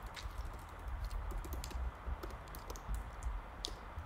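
Typing on a computer keyboard: a run of quiet, irregularly spaced keystrokes as a short command is typed.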